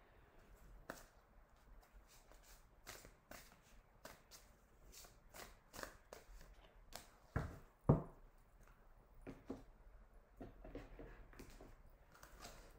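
A deck of cards being handled by hand: a scattered run of faint clicks and flicks as cards are fanned, pulled and slid out, with two louder thumps close together a little past the middle.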